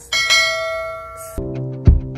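A bright bell chime, the sound effect of an animated subscribe button's notification-bell icon being clicked, rings out suddenly and fades over about a second. Then music with a heavy beat a little under twice a second comes in.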